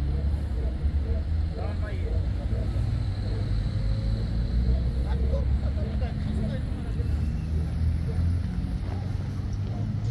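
Steady low rumble of a vehicle engine running nearby, with indistinct voices talking in the background.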